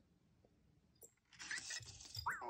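Near silence for about a second, then a faint electronic sound from the EMO desktop pet robot starting about a second and a half in, as it answers the voice command to take a photo.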